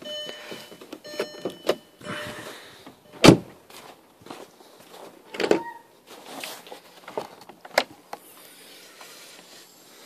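Car door-ajar warning chime pinging in two short runs from a 2004 Volkswagen Jetta with its driver's door open. About three seconds in comes a loud sharp slam, then further knocks and clicks as the hood is released and raised.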